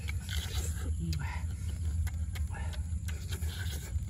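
Eating sounds of raw greens being bitten and chewed: scattered crunches and mouth noises over a steady low rumble.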